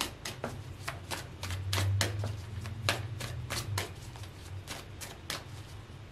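Tarot cards being shuffled and handled: a run of quick, irregular card clicks and snaps, with a low rumble swelling about two seconds in.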